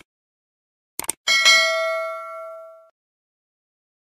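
Subscribe-button animation sound effect: a mouse click at the start, a quick double click about a second in, then a bell ding that rings out and fades over about a second and a half.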